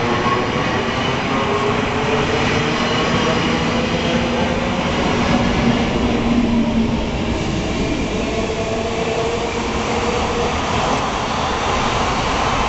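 NS DDZ double-deck electric train pulling away from the platform: its traction motors hum with several steady tones that slowly rise in pitch as it gathers speed, over the rumble of wheels on rail as the coaches pass close by. It is loudest about six seconds in.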